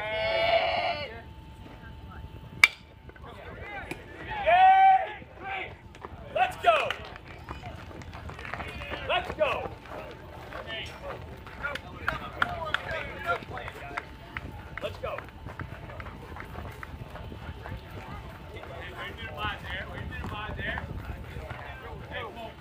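One sharp crack from the play at the plate about three seconds in, followed by loud shouts from players and spectators at the baseball game. Scattered voices and calls then carry on over outdoor background noise.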